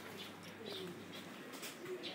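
Faint birdsong: a dove cooing with low, slightly falling notes, twice, among a few short high chirps of small birds.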